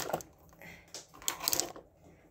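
Light clicking and clattering of makeup items being rummaged through in a search for an eyeliner pencil, with a cluster of clicks a little past the middle.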